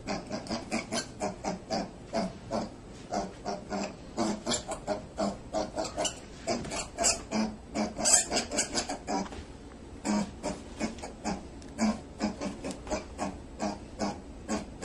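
A small puppy making short, rapid grunting breaths, about four a second, as it works its way down carpeted stairs. The run is loudest a little past the middle.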